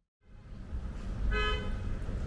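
A single short vehicle horn toot about a second and a half in, over a low rumble, after a brief dropout at the very start.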